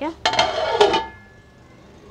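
Metal lid set down on a cooking pot: a short clatter with a brief metallic ring, lasting under a second.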